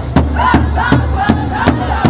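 Powwow drum group singing in high voices over a large powwow drum struck in unison, a steady beat about two and a half times a second.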